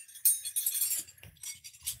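Light metallic clinking and jingling, a quick run of small sharp clicks in the first second, then scattered, fainter ones.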